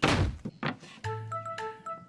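A round wooden lid coming off a wooden barrel: a heavy wooden thunk at the start and a lighter knock about half a second later. About a second in, a music cue begins with a held bass note and a few steady higher notes stepping in pitch.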